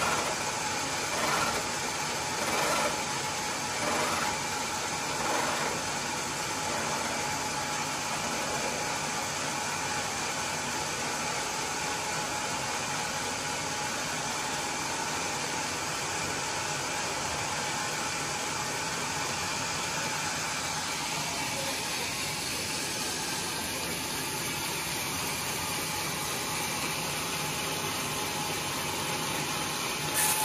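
Sawmill machinery running with a steady mechanical drone and hiss. In the first few seconds a few brief louder pulses come about every second and a half.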